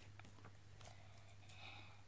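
Near silence: faint paper rustles and light clicks as a picture book's page is turned, over a low steady hum.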